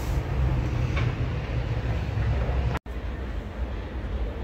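Steady low rumble and hiss heard inside a Ferris wheel cabin as it moves, with a brief cut-out to silence just before three seconds in.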